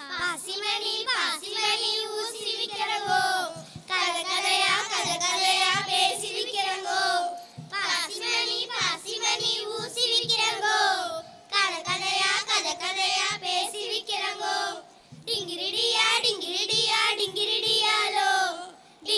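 A group of children singing a song in unison into stage microphones, in phrases of about four seconds with short breaths between them.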